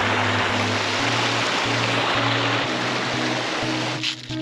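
Water of a small rocky mountain stream rushing steadily over stones, under background music of low held notes.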